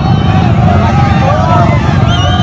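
Motorcycle engines running and revving in a rapid, rumbling pulse, with crowd voices shouting over them.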